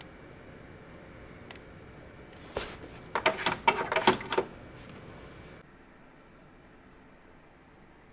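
Handset of a Cobra 75 All Road CB radio being handled and hung on its dash mount clip: a quick run of plastic clicks and knocks over a couple of seconds, over a faint hiss that cuts off suddenly.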